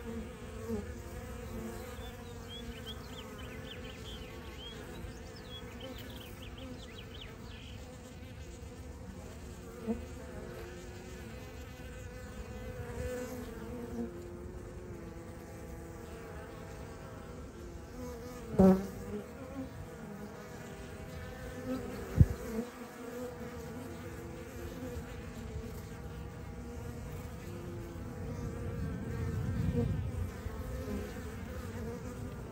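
Steady hum of a honey bee swarm clustered on the ground as the bees begin marching into a hive box. A little after halfway there is a brief louder burst, and a sharp click a few seconds after it.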